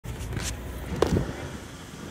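Low rumble inside a car cabin, with a sharp knock about a second in, the kind a phone makes when it is moved around while filming.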